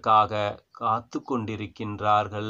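Only speech: a man talking in Tamil, with short breaks between phrases.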